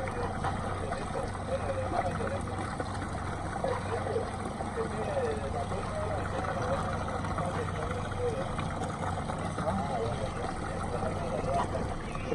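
Boat engine running steadily at low speed with water washing alongside the hull. Faint voices are heard in the background.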